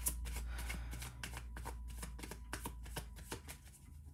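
A deck of tarot cards being shuffled by hand: a quick, irregular run of card snaps and slides.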